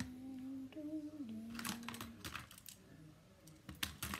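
A young girl humming a few held notes, stepping down in pitch and stopping about two seconds in. A few light taps and clicks follow as markers and stencils are handled on the table.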